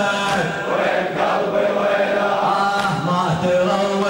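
A crowd of men chanting together in a steady, sustained Shia Muharram mourning chant (latmiya).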